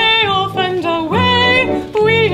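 A woman singing a solo operetta line in held notes with a quick vibrato, over instrumental accompaniment.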